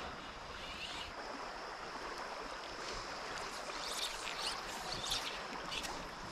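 River current flowing steadily, water rippling and lapping around a wading angler, with a few brief light high sounds on top.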